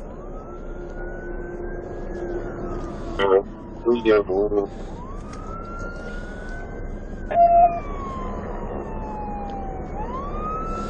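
Police siren in wail mode, its pitch slowly rising and falling, about five seconds per rise and fall. Short bursts of voice break in between about three and four and a half seconds in, and a brief beep sounds about seven and a half seconds in.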